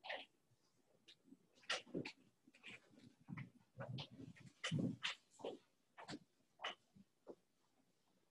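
Faint room noise with about a dozen short, scattered rustles and taps at irregular intervals, the small handling sounds of people writing and shifting at desks.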